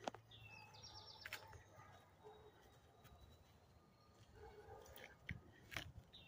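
Faint bird song: a short phrase of a falling whistled note followed by a quick run of high notes, about half a second in. Around it is near silence with a few soft clicks.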